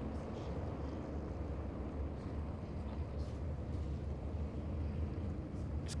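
The pack of NASCAR Cup cars running at speed, heard as a steady low drone of many V8 engines blended together.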